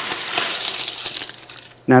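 Ice cubes rattling and clinking against metal as they are scooped from a bowl into a metal cocktail shaker tin, dying away near the end.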